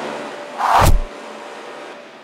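A single brief noise with a low rumble that falls away, a little under a second in, over a steady faint hum.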